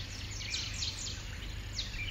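Small birds chirping outdoors: a run of quick high notes, each sliding down in pitch, in the first second and one more near the end, over a steady low background rumble.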